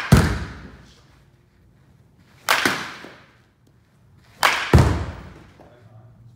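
Baseball bat hitting balls: two sharp cracks about two seconds apart, each followed a fraction of a second later by a heavier, duller thud. A thud from a hit just before also falls right at the start.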